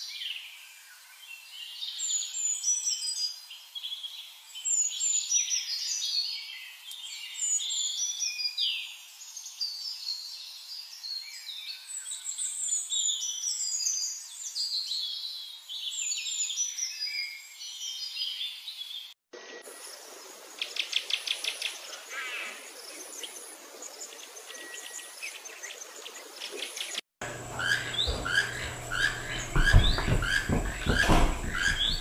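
Several birds chirping and singing in quick, high-pitched phrases. About two-thirds of the way through, the sound cuts abruptly to a quieter stretch of fast buzzy trills, then near the end cuts again to louder, evenly repeated chirps over a low hum.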